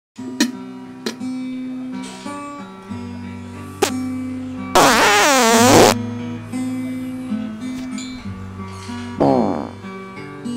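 Plucked acoustic guitar music with a long, loud fart about halfway through whose pitch wavers up and down. A second, shorter fart with falling pitch comes near the end.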